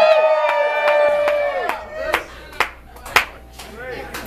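Audience clapping, with one voice holding a long note over it for the first second and a half. The claps then thin out to a few scattered ones.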